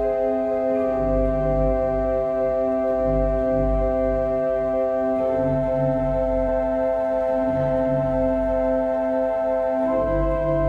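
Pipe organ improvisation: slow sustained chords held for seconds at a time, the harmony shifting about a second in and again around the middle, over low pedal notes that come and go.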